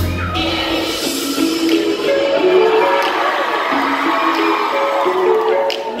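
Live concert music in a large hall: the full band with heavy bass stops about half a second in. A melody of held notes carries on over the crowd cheering.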